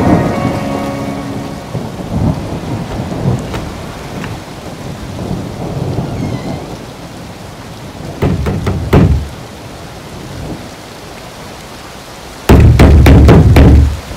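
Rain falling with rolling thunder, laid into the song as a thunderstorm sound effect while the music fades out at the start. A thunderclap comes about eight seconds in, and a louder, longer crack near the end.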